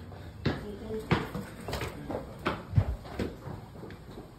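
Footsteps and thumps on a hard floor, about six irregular knocks over four seconds, over a low murmur of room noise.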